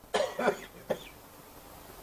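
A man's short cough into the microphone in a pause between sentences, followed by a brief sharp sound about a second in.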